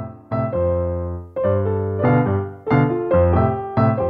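Background piano music: chords struck sharply and left to fade, a new chord every half second to a second.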